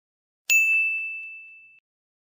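A single high, bright ding like a small bell or chime, struck about half a second in and ringing out over a little more than a second. It is an edited-in sound effect over dead silence.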